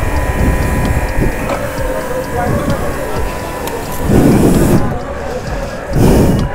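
Pressure washer running with a steady whine while water is sprayed onto a motorcycle, with a louder rush of spray about four seconds in.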